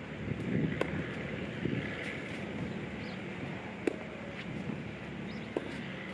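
Tennis rally on a clay court: three sharp pops of ball on racket strings, about one and a half to three seconds apart, over a steady rush of wind.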